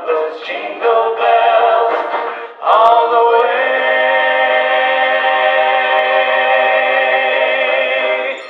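Mixed vocal group of men and women singing in close harmony through microphones: short, clipped syllables for the first couple of seconds, then from about three seconds in one long chord held steady by all the voices.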